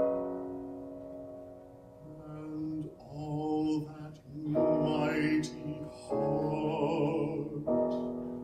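A piano chord struck at the start, ringing and dying away, then a man singing a slow, sustained art-song line with vibrato over soft piano accompaniment, swelling louder on held notes about five and seven seconds in.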